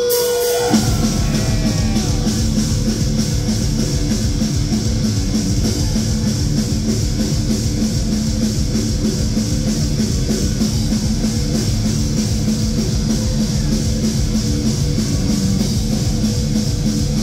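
A heavy metal band playing live and loud: distorted electric guitars and a drum kit. A held guitar feedback note gives way to the full band crashing in under a second in, and the song then runs on steadily.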